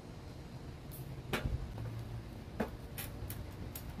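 A few light clicks and ticks, with one sharper knock about a second and a half in: small items being handled and set down while glue is dabbed onto a mounting strip. Under them runs a steady low room hum.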